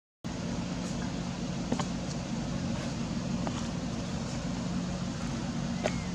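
Steady outdoor background hum with a few faint clicks, after a brief dropout at the very start.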